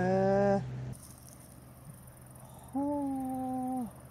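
A person's long, drawn-out "heee" of interest with slowly rising pitch, ending about half a second in. Near the end comes another held vocal sound of about a second, level in pitch and dropping at its close.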